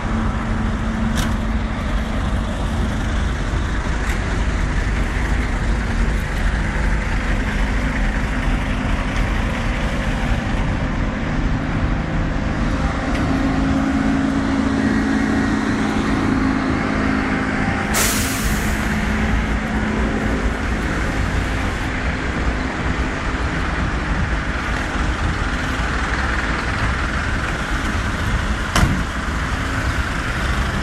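Street traffic in a jam: a steady low rumble of idling bus, minibus and car engines. Just past halfway a short high hiss of compressed air, like a bus air brake releasing, and a sharp click near the end.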